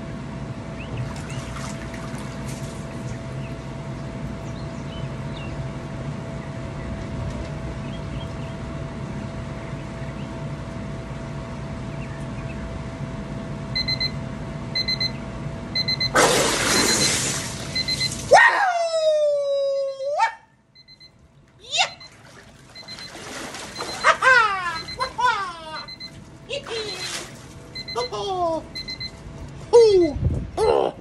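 A steady hum while the man is under the ice-bath water, then a loud splash of water as he surfaces at about 16 s. Gasping, pitched exclamations follow, the first sliding down in pitch, with water sloshing as he climbs out. A short electronic beep repeats through the second half.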